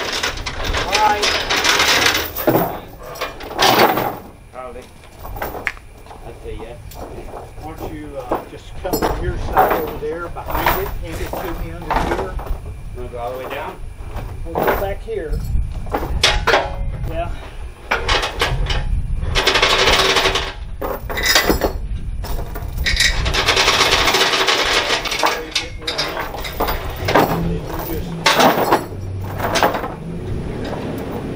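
Steel chains clanking and rattling as they are handled and rigged on a trailer, with many short metallic clicks and knocks and two longer rattling stretches in the second half. Wind rumbles on the microphone.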